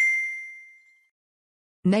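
A single bright ding sound effect: one clear chime-like tone that is struck at once and fades away over about a second.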